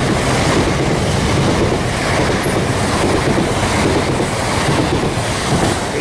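Class 377 Electrostar electric multiple unit running past close by: a loud, steady noise of wheels on the rails.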